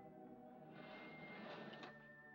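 Curtains being drawn shut across a window: a soft swish of fabric sliding along the rod, ending in a couple of sharp clicks. Quiet orchestral film score plays underneath.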